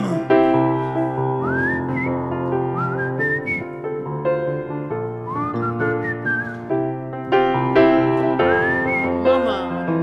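A grand piano plays sustained chords while a man whistles a melody into a microphone, his notes swooping upward several times over the accompaniment.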